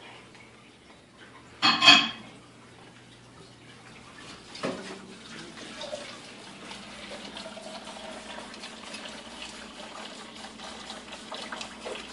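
Kitchen faucet running into a sink while dishes are washed under it, a steady water hiss that starts about four and a half seconds in, with a light knock as it begins. A short loud noise comes about two seconds in.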